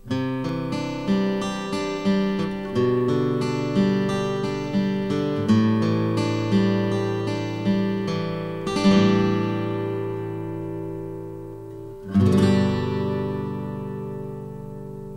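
Intro theme music on acoustic guitar: a run of picked notes, a chord left to ring about nine seconds in, then a final strummed chord about twelve seconds in that rings out.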